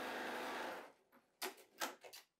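Electric sewing machine running at a steady speed as it stitches a seam through quilting fabric, stopping a little under a second in. Two short clicks follow.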